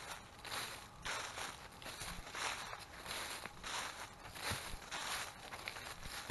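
Footsteps crunching through dry fallen leaves, about two steps a second.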